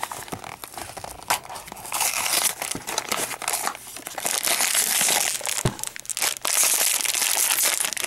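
Cardboard blind box torn open by hand, its flaps ripping, then the foil blind bag inside crinkling as it is pulled out and handled. The crackling is dense and grows louder partway through.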